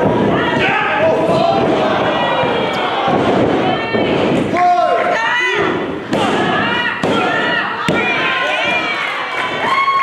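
Wrestlers' bodies hitting the canvas of a wrestling ring with heavy thuds, with a couple of sharp impacts in the second half, over a crowd's steady shouting and yelling.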